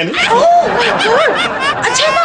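A person laughing with snickers and chuckles, right after a joke.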